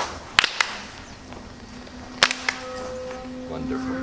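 Shinto ritual hand claps (kashiwade): two pairs of sharp claps, each a strong clap closely followed by a lighter one, the second pair about two seconds after the first.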